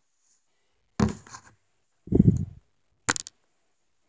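Handling noise from the tablet recording: a sharp knock about a second in, a low rubbing thump around two seconds, and a short click near the end as the device is moved and gripped.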